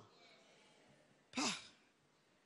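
A man's short sighing "ah" into a microphone about one and a half seconds in, falling in pitch; otherwise quiet.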